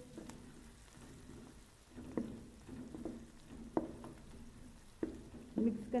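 Sliced onions and green chillies frying in ghee in a metal kadhai, stirred with a spatula: a low sizzle with several sharp knocks and scrapes of the spatula against the pan.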